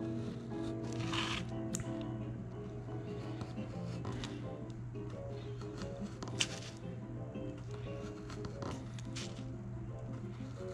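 Background music with sustained notes, over which a craft knife blade cuts short slits through oak tag pattern card in several brief strokes, the sharpest about two-thirds of the way through.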